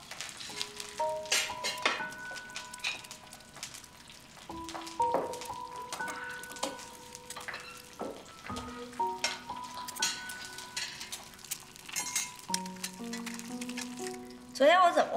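Soft background music of held notes over an egg sizzling in a stainless steel frying pan, with scattered clinks of a metal spatula and utensils.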